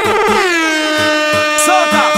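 Soca dance music with a DJ air-horn effect over the beat: one long horn blast whose pitch drops at the start and then holds steady, over a steady kick drum.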